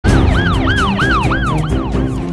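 Siren in a title-sequence sound effect, its pitch sweeping quickly up and down about three times a second over a music bed with steady low tones and bass.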